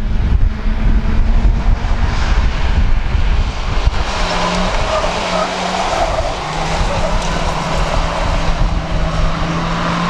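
Several Class 1 autograss cars' engines running hard together as the pack races past on the dirt track, their held notes standing out from about four seconds in. In the first few seconds wind rumbles on the microphone.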